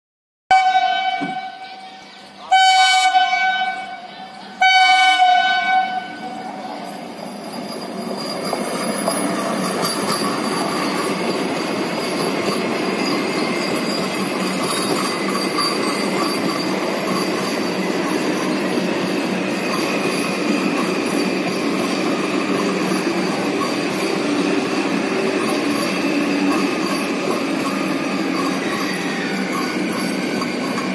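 Vande Bharat Express electric trainset sounding its horn in three blasts about two seconds apart, followed by the steady rumble and rail noise of its coaches passing.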